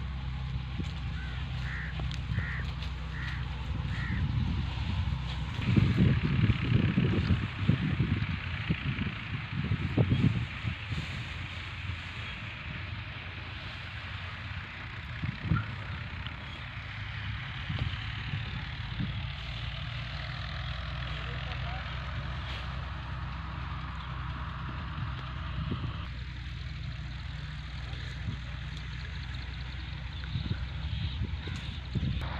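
Massey Ferguson 240 tractor's diesel engine running steadily at idle, growing louder and rougher for a few seconds between about six and eleven seconds in.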